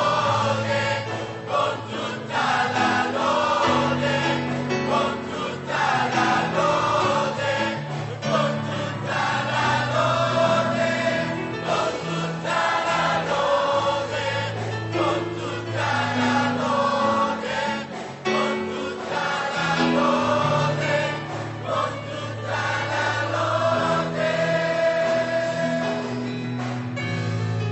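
Mixed youth choir of young men and women singing a gospel worship song in Italian, continuously.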